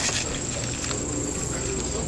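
Shop ambience with a steady high-pitched electronic whine throughout and faint voices in the background; a short click right at the start.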